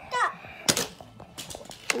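A few sharp knocks and clicks, about three spread through the two seconds, with a brief voice just after the start.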